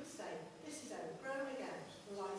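Speech only: a person talking, with no other sound standing out.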